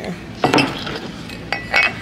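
A candle knocking and clinking against a black ceramic jack-o'-lantern candle holder as it is tried for fit: one sharp knock about half a second in, then a few clinks with a short ring near the end. The candle is too large to go in.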